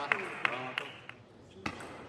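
Table tennis ball clicking off bats and table as a rally goes on: two or three more quick hits, and then the rally stops a little under a second in. A man's voice calls out briefly over the last hits, and a single knock of the ball comes near the end.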